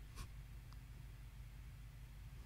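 Quiet room with a steady low hum, and a short sharp click about a fifth of a second in, followed by a fainter tick about half a second later: a plastic CD jewel case being handled.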